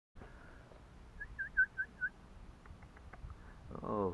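A person whistling five short, quick notes in a row, each dipping and rising in pitch, a little over a second in.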